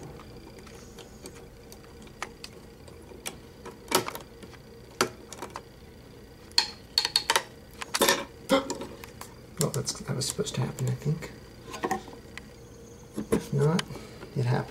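A motherboard CPU socket's metal load plate and retention lever being pressed down and latched by hand over a freshly seated processor. Sparse sharp clicks and snaps come after a quiet start, with a busier run of clicks in the second half, as the plastic socket cover pops off the plate.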